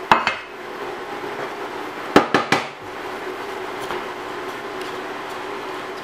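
Strips of gluten-free crust frying in hot vegetable oil in a nonstick pan, giving a steady sizzle. A sharp knock of cookware comes right at the start, and a quick cluster of three clacks follows about two seconds in.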